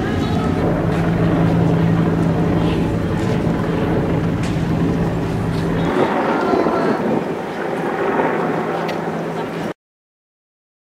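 Steady engine hum from an armoured police vehicle, with voices and shouts in the street around it. About six seconds in the hum drops away, leaving street noise and voices. The sound cuts off suddenly near the end.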